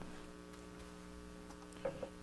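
Faint, steady electrical mains hum from the sound system: a low buzz of several steady tones, with nothing else going on.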